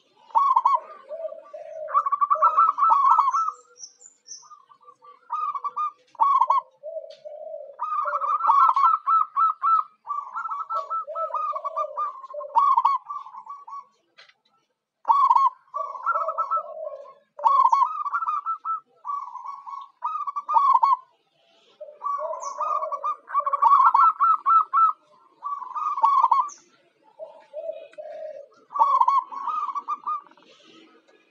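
Zebra dove (perkutut) cooing: repeated phrases of rapid staccato notes, higher notes alternating with lower ones, each phrase a second or two long with short pauses between.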